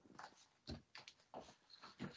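Near silence over a video call's audio, broken by a few faint, short sounds.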